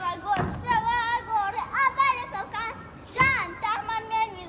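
A young girl chanting a rhyme in a rhythmic sing-song voice, some notes held and wavering.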